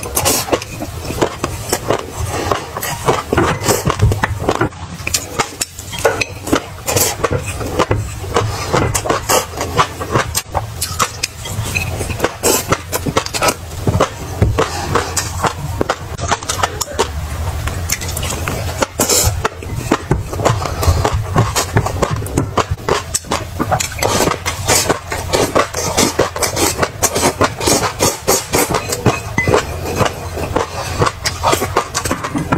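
Close-up eating sounds: wet chewing and lip smacking, a dense run of small clicks throughout, with a plastic spoon scooping and scraping on a ceramic plate.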